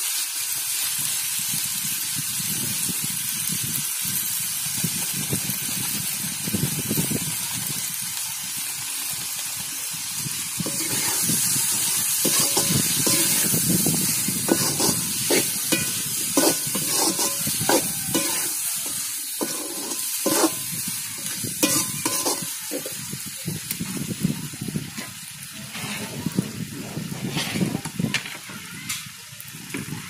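Chopped tomatoes and other vegetables sizzling in hot oil in a metal pot. From about ten seconds in, a metal spoon stirs them, scraping and clicking repeatedly against the pot.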